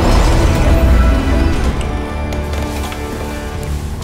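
Heavy low rumble of a large stadium structure crashing and breaking apart, laid over music. After about a second and a half the rumble dies away and sustained musical tones carry on.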